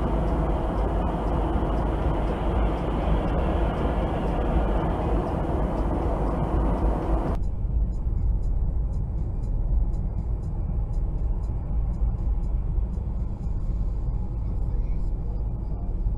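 Steady road and engine noise inside a car driving on a freeway, as picked up by a dashcam. About seven seconds in, the sound abruptly turns duller as its upper part drops away.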